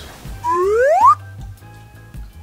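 Background music with a steady beat. About half a second in, a loud whistle-like sound effect slides upward in pitch for just over half a second, then cuts off.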